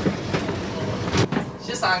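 Tour boat running on a river: a steady engine and water rumble, with wind buffeting the microphone on the open deck. A brief sharp click comes about a second in.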